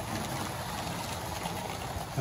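Vintage model trains running on Tri-ang Super 4 track: a steady whirr and rumble of the locos' motors and wheels on the rails.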